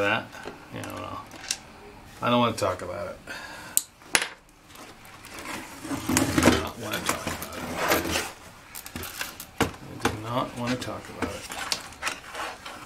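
Handling noise from a plastic laptop being turned over and its keyboard pried loose: scattered sharp clicks, knocks and rattles of plastic and small tools, with some faint mumbling.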